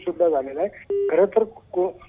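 A man speaking Marathi over a telephone line, the voice thin and cut off in the highs like a phone call. About a second in, a short single steady beep sounds on the line between his words.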